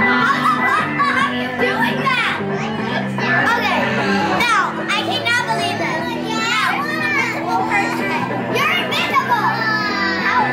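A group of children calling out and shouting in high voices, one after another, over steady background music.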